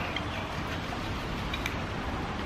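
Steady background hiss with a couple of faint, light clicks as metal suspension parts, a control arm and its bolt, are handled.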